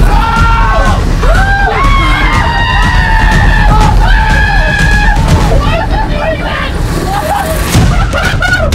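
Several young men shouting and yelling in alarm over each other, over loud background music with a heavy bass.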